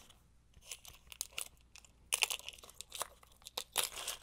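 Light handling noise of small objects on a tabletop: scattered small clicks, with a short cluster of crinkly crackling about two seconds in.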